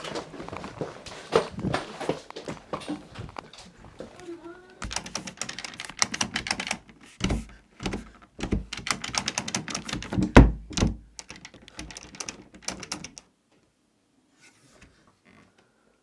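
A door and its metal lever handle being handled: a rapid clatter of clicks, knocks and thuds, with heavier thumps about seven and ten seconds in. It cuts off suddenly about three seconds before the end.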